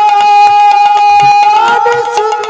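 Kirtan instrumental accompaniment: a melody instrument holds one long, steady note over a quick, regular beat of drum strokes and percussion.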